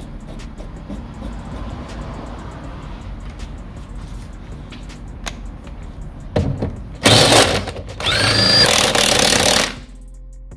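Impact gun running in the lower shock absorber mounting bolt: a brief blip about six seconds in, then two loud hammering bursts, the second with a rising whine as the tool spins up.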